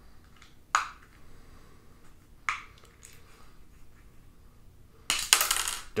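Small plastic toy case clicking as it is worked open: two sharp clicks, about a second in and about two and a half seconds in. Near the end a dense rattling clatter as the case's tiny plastic rifle parts spill out onto a table.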